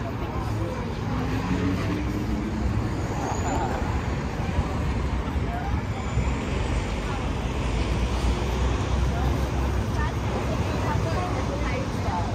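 City street ambience: a steady rumble of road traffic with snatches of passers-by talking.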